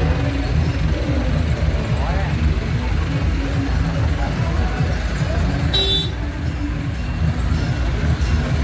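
Low, steady rumble of a truck engine moving at walking pace under the mingled voices of a crowd, with a brief high-pitched toot shortly before six seconds.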